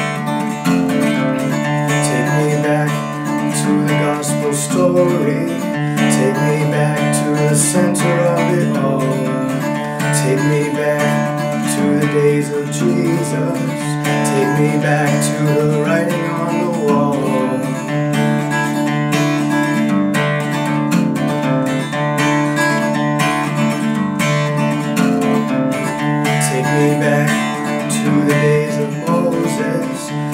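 Taylor cutaway acoustic guitar played steadily, chords ringing without a break.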